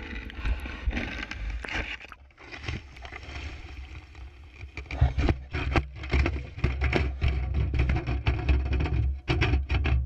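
Water splashing and sloshing, with many sharp clicks and knocks, over a heavy wind rumble on the microphone; it grows louder about halfway through.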